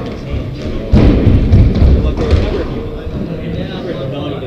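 Squash rally on a wooden-floored court: a sharp knock of the ball about a second in, followed by a burst of heavy thuds from the ball and the players' shoes on the floor, with people talking over it.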